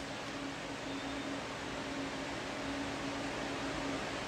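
Steady background hiss with a faint, even hum underneath, and no voice: the room noise of a small room picked up by a phone microphone.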